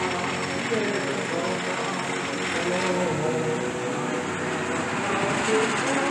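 Amusement park noise: a steady mechanical rumble with indistinct voices over it.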